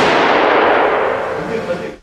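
The reverberating tail of a .270 Remington 700 ADL rifle shot in an indoor shooting range: loud, dense noise that fades slowly over about two seconds and then cuts off.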